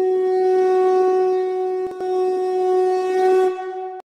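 Conch shell (shankh) blown in one long, steady note with a brief dip about two seconds in. It fades out near the end.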